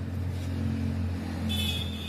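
Motor vehicle engine running steadily with a low hum. A thin, high steady tone joins about one and a half seconds in.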